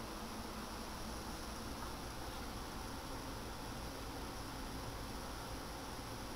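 Faint, steady hiss of room tone and recording noise, with no distinct sounds.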